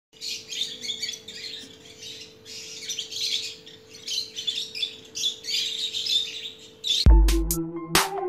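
Cockatiel chicks chirping in quick repeated bouts over a faint steady hum. About seven seconds in, they are cut off by a loud bass hit that opens electronic intro music.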